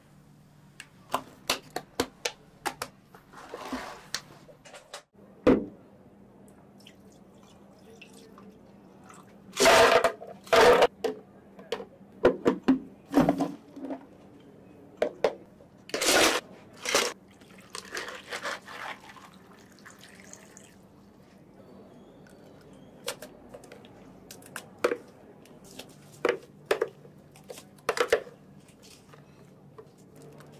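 Drink-making sounds at a cafe counter: ice scooped and dropped into clear plastic cups, loudest in two bursts about ten and sixteen seconds in, along with liquid being poured and the light clicks of cups and utensils being handled.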